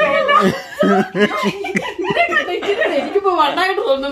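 Women talking excitedly and laughing.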